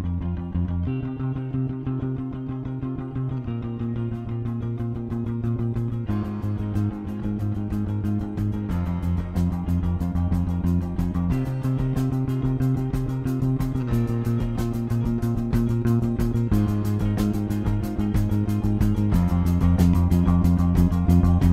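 Sire V7 Marcus Miller four-string electric bass played fingerstyle over a rock band backing track. The chords change about every two and a half seconds, and the band grows fuller and a little louder from about six seconds in.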